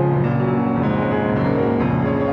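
Estonia grand piano played solo: sustained chords over deep bass notes, the harmony changing every second or so.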